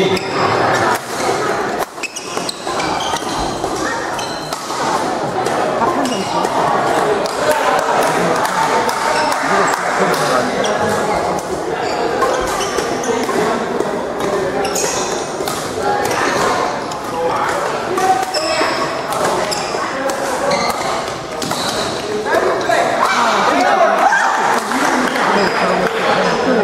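Badminton play in a large hall: repeated racket hits on shuttlecocks and occasional shoe squeaks on the court floor, over continuous chatter of many voices.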